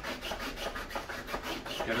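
A cloth scrubbing back and forth over the nylon fabric of a paramotor harness, a quick, even rubbing of about six strokes a second.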